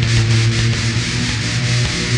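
Death metal music: heavily distorted guitars hold a low note over a dense, loud wall of noise.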